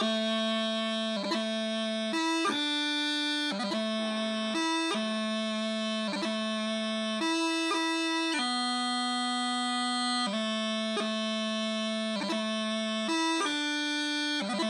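Highland bagpipe practice chanter playing the taorluath breabach variation of a piobaireachd in 'down' timing: one continuous reedy melody of held notes broken by quick grace-note flicks, with no drones.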